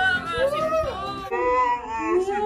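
A high-pitched voice wailing in a string of rising-and-falling, yodel-like arcs, about two a second.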